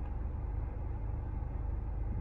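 Steady low rumble of a car's engine idling, heard inside the cabin.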